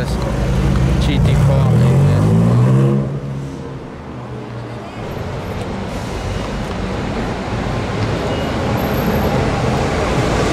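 Porsche 718 Cayman GT4 RS's naturally aspirated flat-six accelerating past, its pitch rising for about three seconds before it cuts off suddenly. Steady street noise follows.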